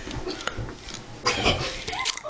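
Two people wrestling at close quarters: grunting and straining, with scuffling and dull thuds of bodies on the floor, loudest a little past halfway.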